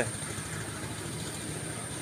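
Engine-driven rice thresher running steadily at a distance, heard as a low, even engine hum.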